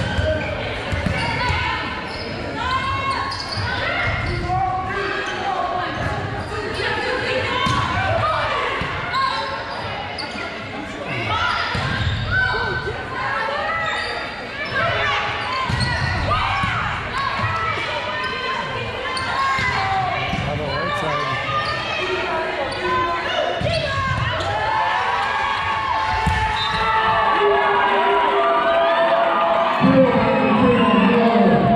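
Volleyball rally in a gymnasium: repeated thuds of the ball being passed, set and hit, with players' calls and spectators' voices echoing in the hall. The voices grow louder near the end as the point finishes.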